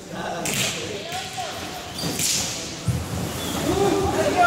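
A nylon play parachute swishing and rustling as it is shaken and lifted, in two short swishes, with a low thump a little before the end.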